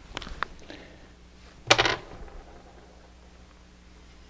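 Faint clicks and knocks of a bolt-action rifle and a screwdriver being handled while its action screws are removed from a bedded stock. Just under two seconds in comes one short, loud pitched sound, like a squeak or a brief grunt.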